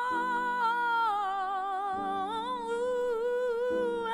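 Slow music: a woman's voice sings long held notes with vibrato over sustained accompaniment chords that change about every two seconds.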